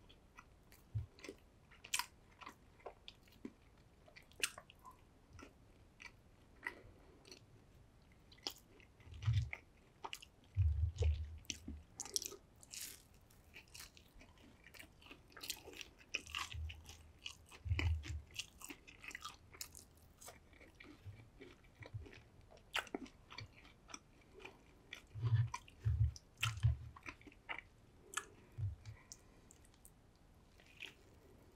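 Close-miked chewing of fried chicken nuggets and other fast food: many small wet mouth clicks and light crunches, with a few clusters of low thuds.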